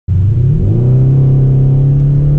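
Mercedes E550 coupe's V8 engine heard from inside the cabin under way, its pitch rising briefly as it accelerates and then holding steady.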